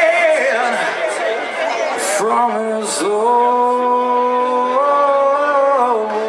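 Live rock performance: a male singer's voice at the microphone, in the hall's reverb, first in bending phrases, then holding one long note for the last three seconds that steps up in pitch once.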